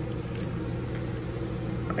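Steady low background hum in a small room, with no distinct event standing out.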